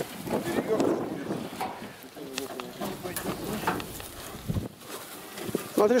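Indistinct voices of a few people at work, with a few light knocks and a dull thump about four and a half seconds in.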